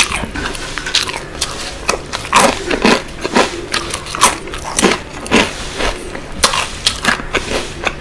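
Close-miked chewing and biting of spicy sauce-coated fried chicken, with irregular sharp crackles and clicks a few times a second.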